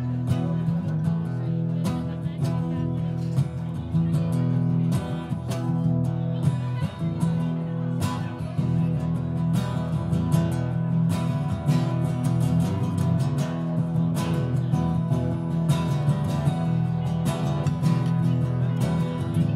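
Two acoustic guitars strummed together, playing chords with no singing.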